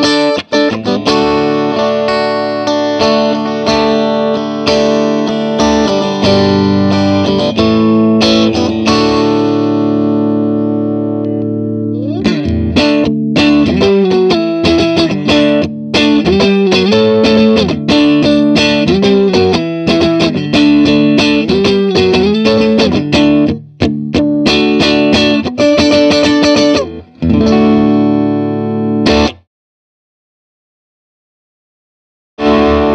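Fender Stratocaster played through a Vox Night Train NT15H valve amp head on its bright channel, heard through a 1x12 pine cabinet with a Weber Blue Dog 50-watt alnico speaker. Chords ring out for about the first twelve seconds, then a busier riff of chords and single notes with short breaks, stopping suddenly near the end.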